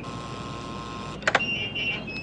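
Electric gate-lock buzzer buzzing steadily for about a second as the gate is released from the intercom, followed by a couple of sharp clicks from the latch.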